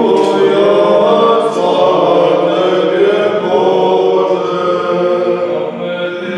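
A small group of chanters singing Serbian Orthodox liturgical chant a cappella, with long sustained notes, growing a little softer near the end.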